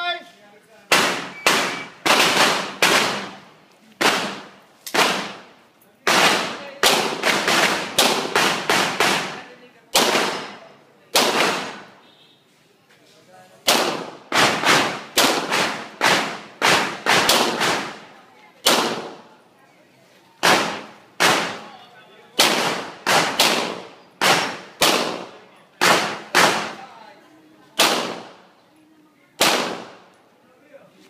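Semi-automatic pistol fired in a long course of fire: rapid strings and pairs of sharp shots, each with a short echo. There is a pause of about two seconds near the middle before the firing resumes.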